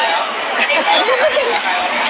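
Several people talking over one another: a babble of chatter in a small crowd.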